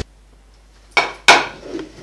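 A plate and cutlery being set down and handled on a table: two sharp clatters about a second in, the second the louder, then a smaller rattle.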